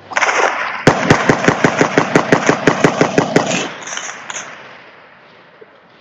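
A burst of automatic rifle fire: about twenty rapid, evenly spaced shots over some two and a half seconds, echoing and dying away. A loud rush of noise comes just before the burst.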